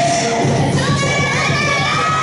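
Children shouting and cheering over the dance music.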